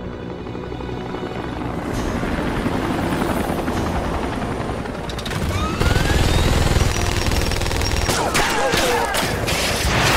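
A low rumble builds steadily, then a rotary machine gun (minigun) opens fire in a long continuous burst about six seconds in, followed by a run of sharp shots and impacts near the end. A film score plays underneath.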